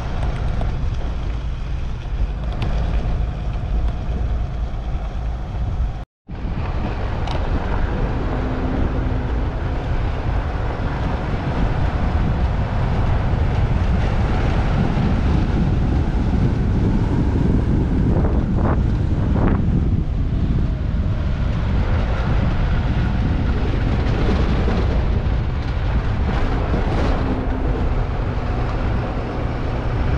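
Vehicle driving along a dirt road: steady road and tyre noise with wind buffeting the microphone. There is a brief dropout about six seconds in.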